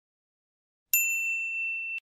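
A single bright bell ding, a notification-bell sound effect, about a second in. It rings on for about a second, fading slightly, then cuts off abruptly.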